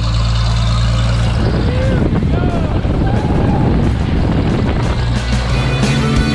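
Single-engine propeller plane's engine running on the ground, a steady low drone that starts suddenly with the cut, as the plane taxis toward its takeoff roll. Music and brief voices are mixed over it.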